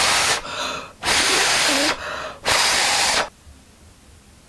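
A person blowing hard on the back of her hand three times, long breaths of air close to the microphone, to dry a swatch of liquid eyeliner. The blowing stops a little after three seconds.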